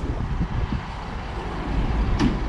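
Low, steady rumble of a motor vehicle engine.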